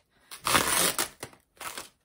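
Tissue paper crumpling and rustling as hands pull apart the wrapping around a packaged item. There is a loud burst of rustling about half a second in, followed by a couple of shorter, softer rustles.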